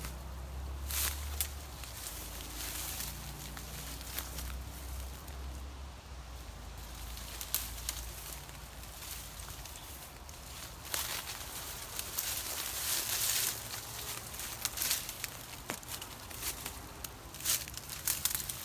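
Dry branches and leaves rustling and twigs cracking as a person pushes an arm into a brush thicket, with scattered sharp snaps and a longer spell of rustling about eleven seconds in. A low rumble sits under the first few seconds.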